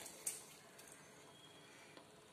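Near silence with faint room hiss, and one brief soft splash-like rustle about a quarter second in as salt is dropped into a pan of water.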